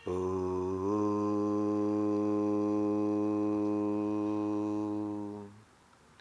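A man's voice chanting one long, steady Om, stepping slightly up in pitch about a second in and fading out near the end.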